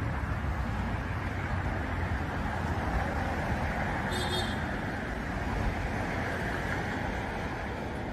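Steady street and traffic noise with a low rumble, from slow-moving cars in a parking lot. A brief high beep sounds about four seconds in.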